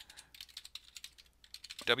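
Typing on a computer keyboard: a quick run of light keystrokes that stops about two seconds in.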